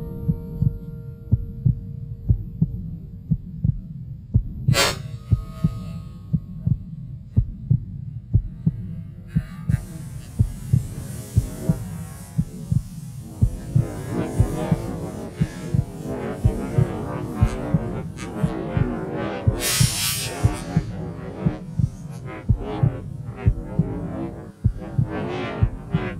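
Footsteps of a walker, picked up by a worn camera as low regular thumps about one and a half a second, with one sharp click about five seconds in. From about ten seconds in, a rustle of dry grass and snow brushing against legs joins the steps.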